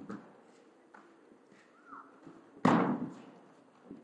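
A loud single thud of a body landing on the mat from a throw, about two and a half seconds in, echoing briefly in the large hall; a few soft knocks of feet and falls on the mat come before it.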